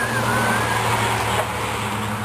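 A woman laughing breathlessly, with a brief high squeal at the start, over a steady low hum.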